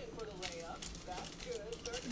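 Faint voices talking in the background.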